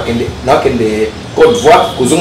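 Speech only: animated conversational talking with rising and falling pitch, no other sound standing out.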